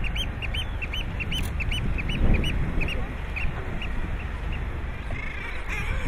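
A seabird giving a run of short, high, quickly repeated calls, about four a second, that stop about halfway through, over a steady rushing background noise.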